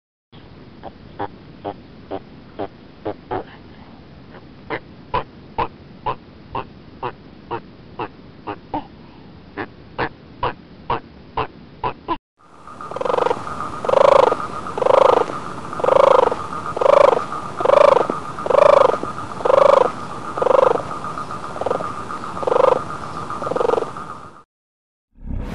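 Animal calls from two different recordings in turn. First comes a run of short, sharp clicking calls about twice a second. About halfway through, louder rhythmic calls about once a second begin over a steady high-pitched tone.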